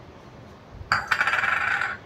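Metal kitchen utensils clinking and rattling in a dense, jingling burst about a second long, starting about a second in.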